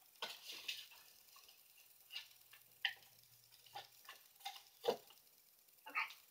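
Folded paper slips being rummaged through in a jar by hand: faint, scattered small clicks and rustles.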